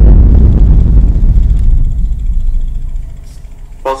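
A deep, low boom that hits suddenly and fades away slowly over about three seconds, an intro sound effect opening the video.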